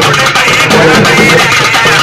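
Urumi melam drum ensemble playing a loud, fast rhythm, with the rising and falling groan of the urumi drums over the struck beat.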